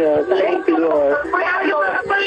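A person's voice speaking with hardly a pause.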